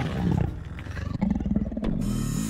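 A carnivorous dinosaur's growl, a sound effect: a low, rough rumbling call in two long stretches with a short break near the middle.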